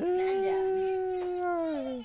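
A toddler's long, playful vocal "aaah", held on one steady pitch and sliding down at the end.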